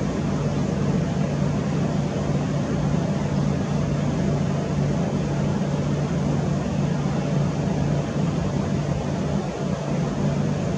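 A steady, unbroken low mechanical hum over a constant wash of noise, with no changes in pitch or level.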